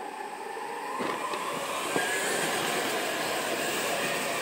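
Several indoor go-karts pulling away and passing close. Their motor noise swells about a second in and then holds steady, with a faint high whine.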